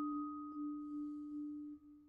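Vibraphone played softly with yarn mallets: one low note struck again and again, several times in two seconds, ringing on as a pure sustained tone that fades near the end.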